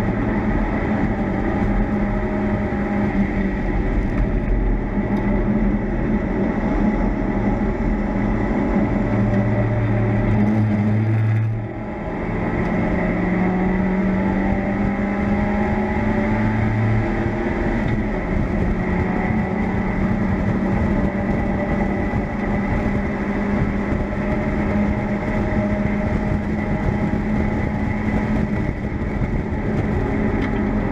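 Mazda MX-5 race car's four-cylinder engine heard from inside the open cockpit, pulling hard at high revs along with wind and road noise. About twelve seconds in the sound drops off briefly, as on a lift or gear change, then the engine picks up again and its pitch climbs slowly.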